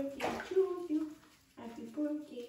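Water sloshing and splashing in a shallow bathtub as a beagle puppy's paw is washed by hand, with a short rush of splashing just after the start. A wavering voice-like sound runs over it.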